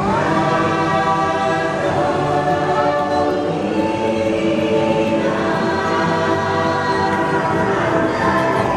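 Choir singing with music, voices holding long sustained notes that shift slowly in pitch.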